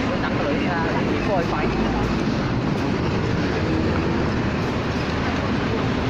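Busy street ambience: a steady rumble of traffic under the chatter of a crowd of pedestrians passing close by, with a few voices standing out in the first two seconds.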